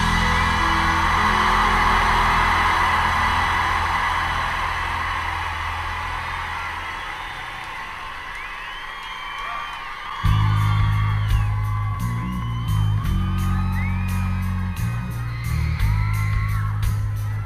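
Live rock band between songs, heard off the mixing desk: a held keyboard chord and crowd cheering fade out over the first several seconds. About ten seconds in, a new song starts with a low, repeating bass-note riff over a steady ticking beat, while fans whoop over it.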